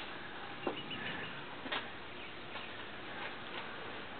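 Quiet outdoor background noise with a few faint, sharp clicks, one about two-thirds of a second in and another a little under two seconds in.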